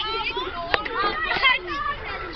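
Several young voices calling out over each other in high, excited tones, with one sharp click about three-quarters of a second in.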